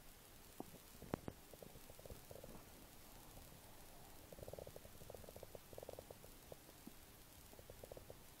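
Near silence with faint scattered clicks and short crackly rustles, thickest about halfway through, typical of a phone being handled while it records.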